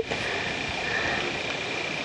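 Steady outdoor background noise: an even hiss with a faint, high, unchanging tone running through it.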